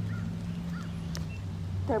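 A steady low hum with two faint, short, chirp-like animal calls in the first second and a single click just past the middle.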